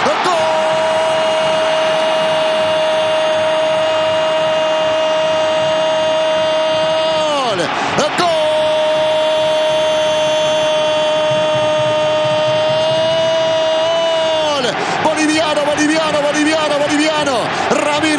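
A Spanish-language football commentator's long, drawn-out goal cry. Two high held notes of about seven seconds each fall away at the end, with a quick breath between them, and the cry then goes on lower and wavering.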